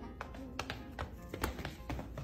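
A small dog's sneaker-shod paws tapping and scuffing irregularly on a hardwood floor as it walks awkwardly in the shoes, over background music.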